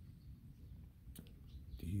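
A pause in a man's speech: quiet room noise with a low hum and a single faint click a little past a second in, then his voice starting again near the end.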